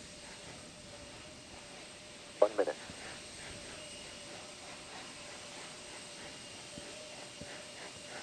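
Faint steady hiss with a thin steady hum under it, broken once about two and a half seconds in by a short, clipped voice-like blip.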